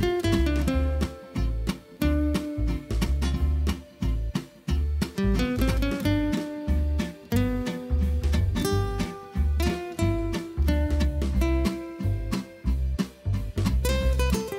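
Background music: a strummed guitar playing over a steady low beat.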